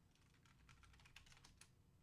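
Faint typing on a computer keyboard: a quick run of light key clicks lasting about a second and a half, over a low steady hum.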